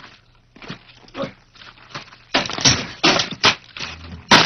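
Men yelling harshly and scuffling as a brawl breaks out, in loud irregular outbursts from a little past halfway, after a few faint knocks.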